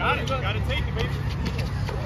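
Players' voices calling out on an outdoor basketball court, loudest in the first half-second, over a steady low rumble.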